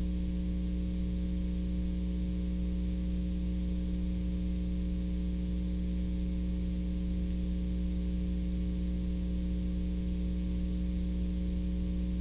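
Steady mains hum over a layer of hiss.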